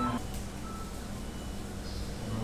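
Background music ends just after the start, leaving a steady low rumble with a few faint, brief tones.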